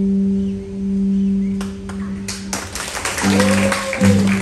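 Solo electric guitar played through an amplifier: a held low note rings for the first second and a half, then a run of rapid, sharp percussive strokes, with a note bent up and back down near the end.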